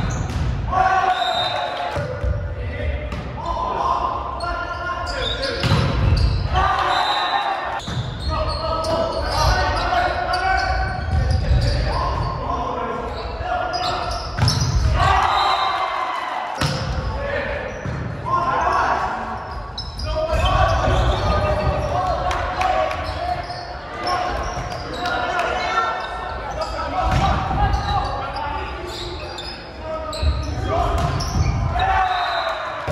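Volleyball rally in a gymnasium: players' voices calling and shouting, with the slaps of the ball off hands and floor, echoing in the large hall.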